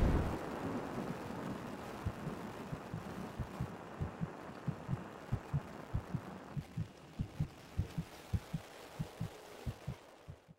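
Heartbeat sound effect: short low thumps in lub-dub pairs, a little faster than one pair a second. They come in about two seconds in as the tail of the music dies away, grow stronger, then fade out at the end.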